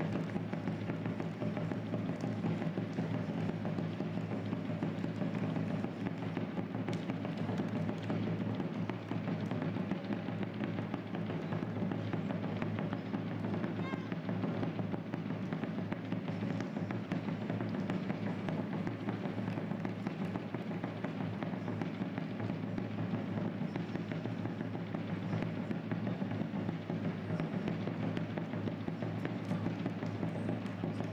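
Steady roadside marathon ambience: runners' footsteps passing, indistinct voices of spectators and music in the background, with no clear single event standing out.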